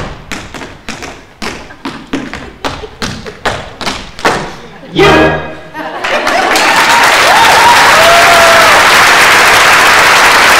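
Rhythmic thuds on a wooden stage, about three a second, end about five seconds in with a loud held chord from the pit orchestra. A theatre audience then breaks into loud, steady applause, with a few whistles.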